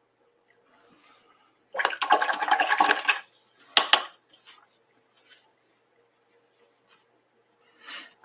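A paintbrush is swished and rattled in a water rinse jar for about a second, then given a single sharp tap against the jar.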